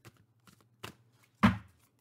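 Oracle cards being drawn from a deck: a few light clicks, then one sharp knock of a card set down on the table about one and a half seconds in.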